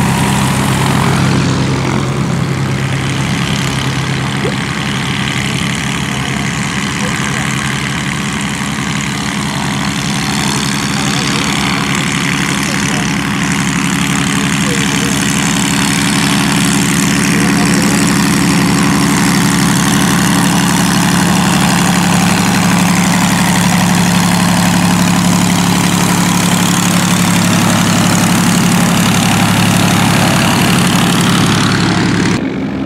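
Light-aircraft piston engines running at idle with propellers turning as small planes taxi close by, a steady low drone that grows a little louder past the middle.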